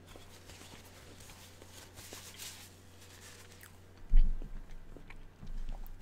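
Close-miked chewing of a soft pickled quail egg: faint, wet mouth sounds and small clicks. A dull low thump about four seconds in.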